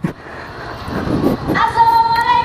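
Honda CB500X parallel-twin motorcycle engine running, a steady whining tone that comes in about one and a half seconds in.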